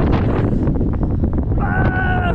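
Wind buffeting the camera microphone: a loud, gusty low rumble. Near the end a short held pitched sound begins.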